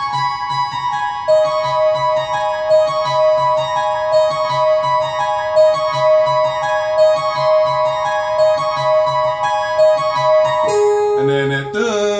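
Digital piano set to a layered harpsichord-and-string voice, playing an A-flat-minor figure: rapidly repeated high notes over a held middle note and a pulsing bass octave. Near the end the held note drops to a lower one.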